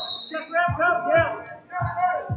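Indistinct voices calling out in a large hall, over background music.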